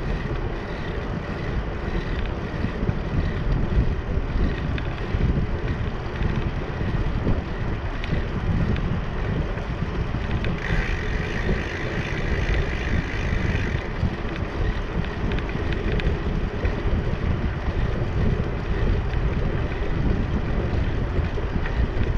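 Bicycle riding over a concrete deck with wind buffeting the microphone: a steady low rumble of wind and rolling tyres. A higher hiss joins for about three seconds near the middle.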